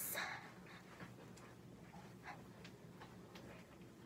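Quiet small-room background with faint, irregular small ticks and clicks.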